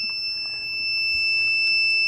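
Test meter's buzzer sounding one steady, unbroken high-pitched beep with the test clips closed across a diode that reads as a near short.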